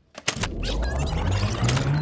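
Reel-to-reel tape machine: a few sharp clicks of the transport engaging, then the reels spinning fast with a whir that rises in pitch and a high warbling chatter.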